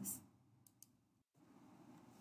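Near silence between narrated sentences, with two faint brief clicks about two-thirds of a second apart in the first half.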